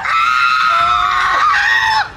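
A woman's long, high-pitched scream of disgust, held at a nearly steady pitch. A second, lower voice joins briefly in the middle.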